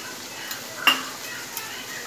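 Masala of onion paste and ground spices frying softly in oil in a kadai, a steady low sizzle, with a metal spoon clinking against the pan about a second in.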